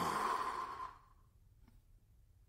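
A person's sigh, one breathy exhale lasting about a second and fading out.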